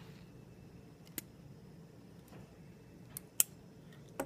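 Quiet room with a low steady hum and three short sharp clicks, the loudest a little over three seconds in.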